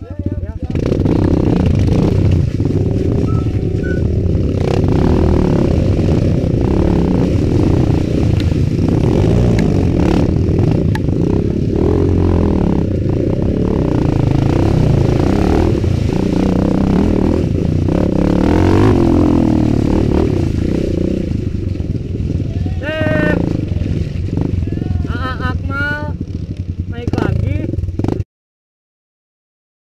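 Kawasaki KLX 150 G dirt bike's single-cylinder four-stroke engine running steadily under way through mud, close to the camera, easing off a little over the last several seconds. Voices call out near the end as the bike reaches other riders.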